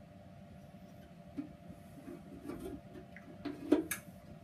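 Quiet handling sounds on a Record Power BS250 bandsaw, a few soft knocks, then a sharp click near the end as the upper wheel cover is opened. A faint steady hum sits underneath.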